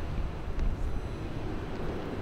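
Low, uneven rumble of wind buffeting the camera's microphone outdoors, with no clear event.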